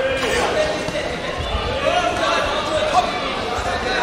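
Raised voices shouting in a large sports hall during a taekwondo bout, with a few dull thumps of feet on the competition mat as the fighters break from a clinch.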